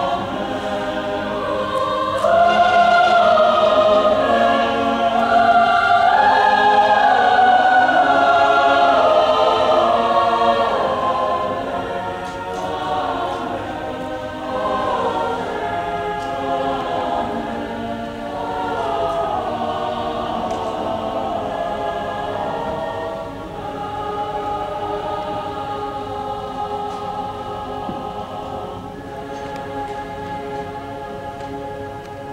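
A large choir of graduating students in caps and gowns singing together, fuller and louder in the first third, then softer.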